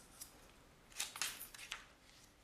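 Pages of a picture book being turned by hand: a brief run of crisp paper rustles about a second in, with a faint click near the start.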